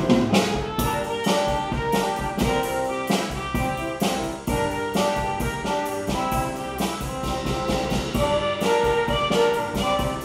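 A saxophone and brass ensemble plays a lively tune, with trumpet and trombone prominent over a steady rhythm.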